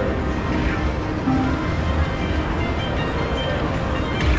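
Casino gaming-floor ambience: music and short electronic slot-machine tones over a steady low hum of the room.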